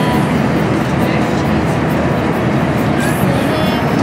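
Steady, loud drone of an airliner cabin in flight, deep and even, with faint voices under it.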